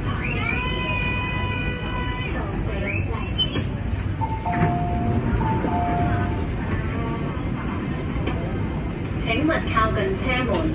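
Inside a Tuen Ma Line Kinki Sharyo train standing at a platform: a steady low rumble with voices under it. A held electronic tone sounds from about half a second in to about two seconds, and a high-low two-note signal plays twice near the middle.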